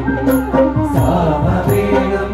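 A group of men singing a Hindu devotional bhajan in chant style, backed by keyboard, with small hand cymbals struck about twice a second.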